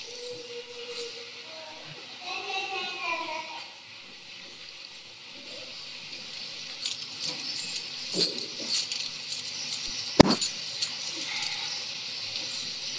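Steady hiss of an old recording with faint room sounds: a brief, faint voice about two to three seconds in, a few soft rustles later on, and one sharp click about ten seconds in.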